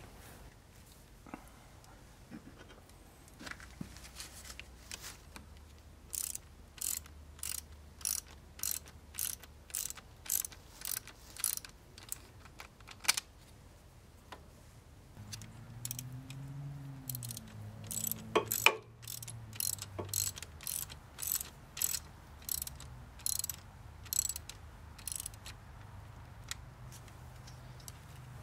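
Socket ratchet wrench clicking in a steady run of short strokes, about one or two a second, as it tightens a battery cable terminal clamp onto a battery post.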